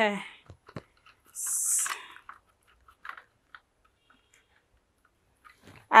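Faint clicks and handling noise from a tripod's plastic-and-metal phone holder being folded back on its pan head, with a short hiss a little over a second in.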